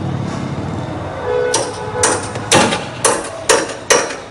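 Hammer blows, about two a second, starting about a second and a half in, each with a short metallic ring: nails being driven to fix fibre roof sheets onto the awning's metal frame.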